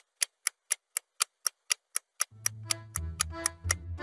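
Clock ticking sound effect, a sharp tick about four times a second, marking hours of cooking time passing. About two seconds in, music comes in beneath the ticks and grows louder.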